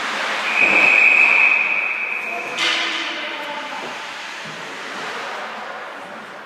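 Referee's whistle blown in one long steady blast of about two seconds, stopping play, over arena crowd noise and voices. A sharp knock comes just as the whistle ends.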